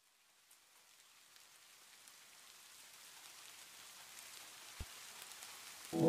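Faint rain fading in, a steady patter with scattered drops that grows gradually louder. One soft low thump comes about five seconds in.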